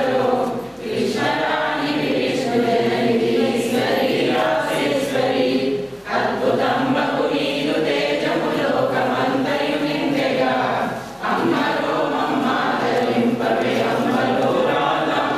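A group of voices singing or chanting together, in long phrases with a brief breath gap about every five seconds.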